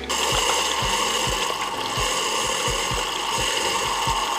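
K-cup pod coffee machine running: a steady whirring hum with an even low pulse about two and a half times a second.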